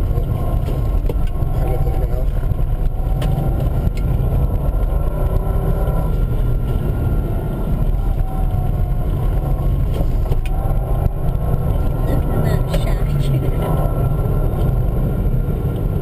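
Subaru Impreza 2.5 TS flat-four engine and tyre noise heard from inside the cabin while driving on a snowy road: a steady low drone without sharp revving.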